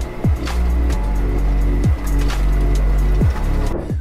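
Background music with a heavy beat: a steady deep bass, four deep bass notes that slide down in pitch, and light ticking percussion.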